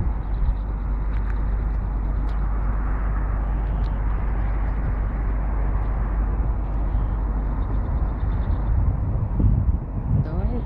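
Steady outdoor roadside noise: a constant low rumble under an even hiss, with no distinct events.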